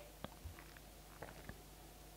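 Near silence: room tone with a few faint, short clicks as a small plastic dinosaur figure on its base is handled and turned in the fingers.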